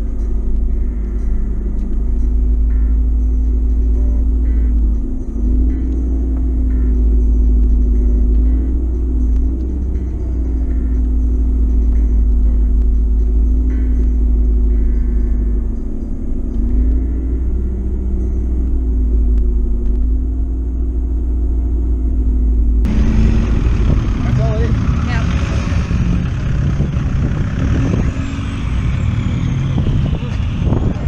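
A car's engine humming steadily from inside the cabin as the car crawls along, its pitch rising and dipping slightly with the throttle. About 23 seconds in it cuts sharply to open-air noise with voices.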